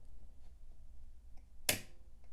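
A single sharp click about three-quarters of the way through from a Remington desktop typewriter's platen mechanism. This is the platen snapping back into its line detent as the line release lever is returned, so the carriage re-indexes to its original line. Otherwise only a low room hum.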